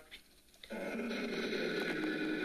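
Spirit box static: a steady hiss with a faint hum, cutting in suddenly about two thirds of a second in after a moment of near silence.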